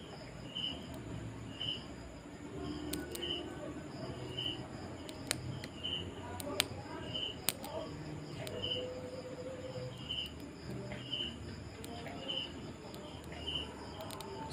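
A cricket chirping at an even pace, about one short high chirp a second, with a few sharp clicks scattered through.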